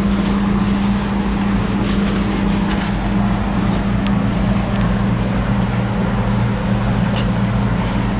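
A steady low machine hum with a constant low tone continues throughout. Over it is faint rubbing, with a couple of light knocks, as a cloth wipes a whiteboard.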